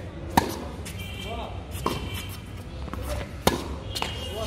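Tennis ball being struck with rackets in a rally on an outdoor hard court: three sharp pops about a second and a half apart, the first and last loudest, with faint voices behind them.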